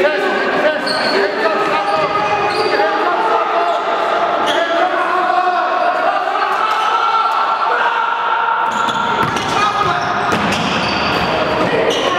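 A basketball dribbling and bouncing on a hardwood gym floor, with players' voices calling out in an echoing gym.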